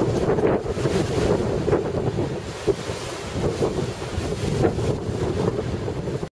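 Wind buffeting the camera's microphone outdoors, a loud, uneven rushing that comes and goes in gusts.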